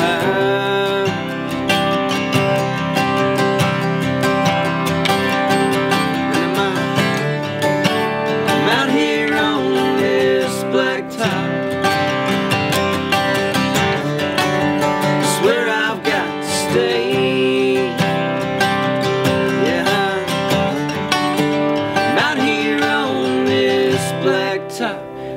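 Two acoustic guitars, a 1964 Epiphone Frontier flattop and a 1951 Stromberg archtop, strummed and picked together through a stretch of the song between sung lines.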